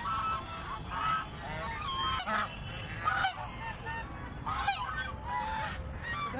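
A flock of domestic geese honking, with many short calls overlapping one after another over a steady low background noise.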